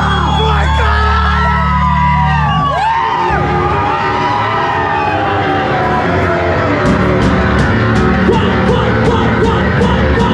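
Audience whooping and yelling over a held low amplified chord as a live rock band starts its set. A steady drum beat with cymbal strokes comes in about seven seconds in.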